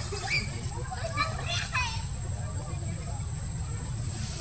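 A few short, high-pitched squealing calls, the clearest one sweeping sharply down in pitch just before the two-second mark, over a steady low rumble and a faint, thin, steady high whine.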